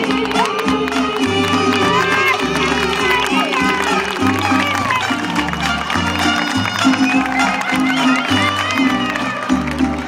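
Live mariachi band playing an instrumental passage, a stepping bass line under sustained melody, with crowd voices over the music heard from within the audience.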